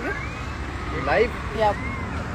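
Low, steady rumble of road vehicles, with brief voices of people nearby over it.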